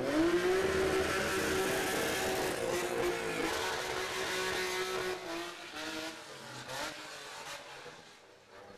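Car engine revving up sharply and held at high revs, with tyres screeching as the car drifts. The engine note drops a step about three and a half seconds in, then the sound fades away near the end.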